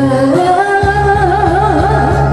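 A woman singing a Korean trot song into a microphone over instrumental accompaniment, rising into a long held note with wide vibrato in the second second.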